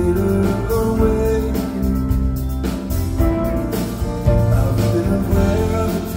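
Live band music from a concert stage: a mid-tempo rock song with electric guitar, playing continuously at an even level.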